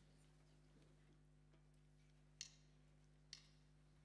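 Near silence: quiet hall room tone, with two short sharp clicks about a second apart in the second half.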